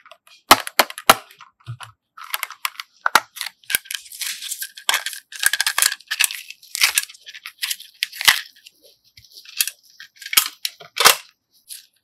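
Small hard-plastic toy suitcase cases being handled and snapped open: three sharp plastic clicks in quick succession about half a second in, then a few seconds of rattling, scraping and tapping of plastic, with more sharp clicks near the end.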